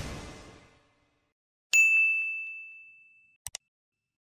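Animated end-card sound effects: a rushing swoosh fades out in the first second, then after a short silence a single bright, bell-like ding rings out and decays over about a second and a half. Two quick clicks follow near the end.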